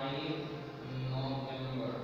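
A man's voice in long, drawn-out held tones, chant-like rather than ordinary speech.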